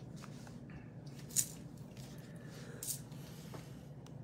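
Clear plastic wrapper crinkling as it is handled, in two short bursts about a second and a half apart, over a low steady hum.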